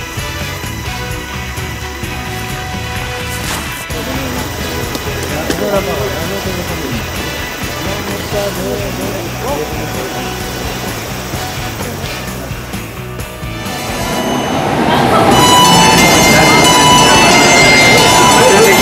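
Voices of a crowd, then, from about fourteen seconds in, a much louder subway train running along the platform.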